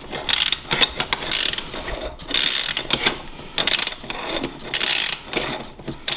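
Socket ratchet wrench clicking in short repeated strokes, about one a second, as the nut on a bicycle's rear axle is turned.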